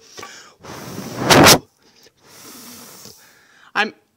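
A person blowing a puff of breath across a small pile of powdered sediment. The puff grows louder for about a second and stops sharply. A softer, shorter stretch of breath follows.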